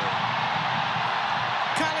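Football stadium crowd cheering a goal as a steady wash of noise, with the tail of the commentator's falling goal call at the start and his voice resuming near the end.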